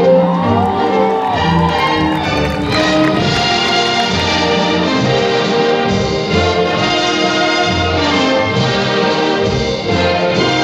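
Recorded orchestral music with brass, playing without vocals; a sliding note rises and falls about a second in.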